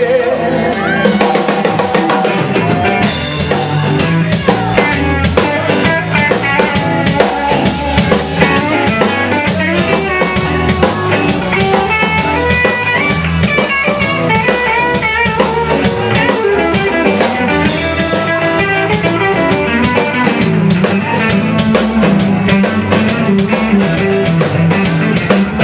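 Live rock band playing an instrumental stretch on drum kit and electric guitar. A high cymbal wash comes in about three seconds in and again around eighteen seconds.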